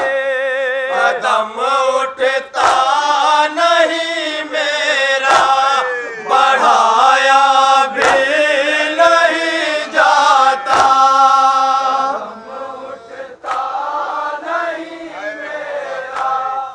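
A group of men chanting a noha (Urdu mourning lament) in unison through a microphone, with the sung voices wavering in pitch. A sharp slap cuts through about every two and a half to three seconds, in time with their chest-beating (matam).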